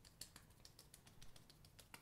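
Fingertips patting primer onto the face: a quick, irregular run of faint, light taps on skin.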